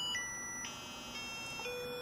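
Faint electronic tones from an Arduino circuit, stepping every half second through octaves of the note B: a high 1968 Hz tone, then the low 123 Hz note, then 246 Hz, and about 492 Hz near the end. The timer interrupt doubles the frequency each step and resets to the base note after the ×16 step.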